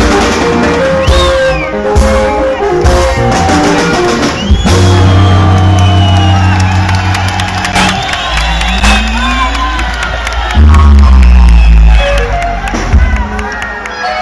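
Live sungura band music from electric guitars, bass guitar and drum kit, with heavy held bass notes and a bass slide upward a little past the middle. Crowd cheers and whoops over the band.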